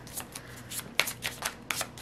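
A deck of tarot cards being shuffled by hand: a string of irregular, crisp card snaps, the sharpest about a second in and again near the end.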